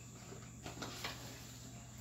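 Quiet room tone with a low steady hum and a few faint short handling noises from a smartphone held in the hand while its buttons are pressed.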